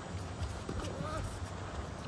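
A tennis rally on an outdoor hard court: faint light taps of shoes and a distant racquet striking the ball, with a faint voice calling briefly about a second in.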